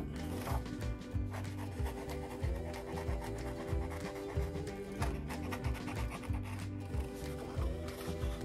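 Background music with a steady beat, over the rasp of scissors cutting through construction paper.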